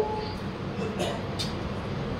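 Steady background noise from a running ceiling fan and the sound system, with a couple of faint clicks about a second in as a book is handled.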